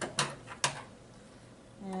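Three short, sharp clicks from hands working at a sewing machine, all within the first second, followed by quiet.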